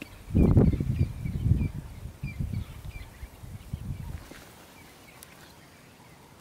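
Bird repeating a short high chirp about three times a second, over a low irregular rumble that is loudest near the start and dies away about four seconds in.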